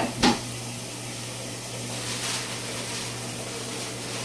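A short sticky smack just after the start as homemade shaving-gel slime is handled, then a steady background hiss with a low hum.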